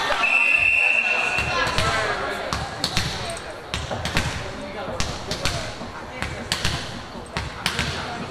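A volleyball bounced repeatedly on a hardwood gym floor by a server getting ready to serve, the bounces coming irregularly and ringing slightly in the hall. Near the start there is a steady whistle blast lasting about a second and a half, typical of a referee's whistle clearing the serve.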